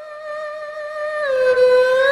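Erhu, the two-stringed Chinese bowed fiddle, holding one long bowed note that swells louder. About halfway through it slides down in pitch, then begins to slide back up near the end.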